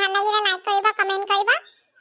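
A high-pitched, cat-like cartoon character's voice speaking in quick syllables, its pitch rising near the end before a brief pause.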